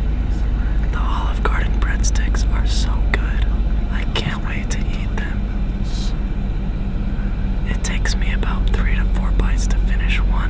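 Whispering and wet mouth sounds, lip smacks and mouth clicks, made ASMR-style right up against the microphone, over a steady low rumble.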